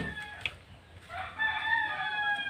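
A rooster crowing: one long call that starts about a second in and runs on past the end, after a short knock about half a second in.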